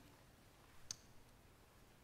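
Near silence: room tone, with a single faint click a little under a second in.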